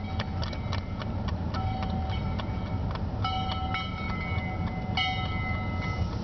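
Steady road and engine rumble inside a moving car's cabin. Over it come irregular sharp clicks and several short ringing tones about a second long, from the second second onward.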